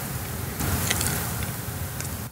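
Steady background noise: a low hum under an even hiss.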